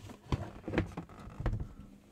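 Plastic incubator casing being handled: a few short knocks and clicks as the back cover is pulled open and moved aside.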